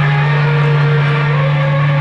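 Distorted electric guitar through a stage amplifier, holding a sustained chord that rings on steadily and unchanging.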